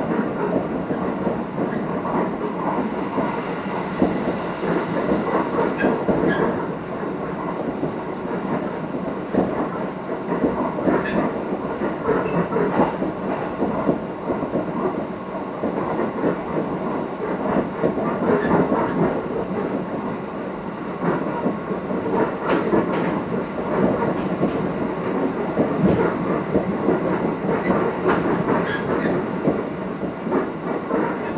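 Cabin noise of a local electric train running along the line: a steady rumble of wheels on the rails, broken by short clicks and knocks from the track throughout.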